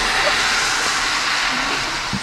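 A steady rushing hiss, easing off slightly in the second half.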